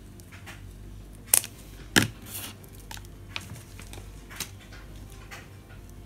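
Sharp clicks and taps of craft tools and glitter fabric being handled on a cutting mat: two loud clicks about one and a half and two seconds in, then a few lighter ticks. A tumble dryer runs with a steady low hum underneath.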